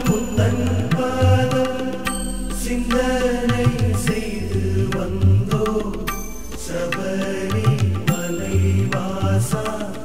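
Tamil devotional song music in Carnatic style: a pitched melody line over a steady pattern of low hand-drum strokes.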